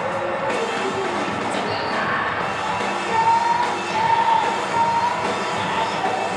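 Live rock music from an electric guitar and drum kit playing a song, with a sustained melodic line coming in about halfway through.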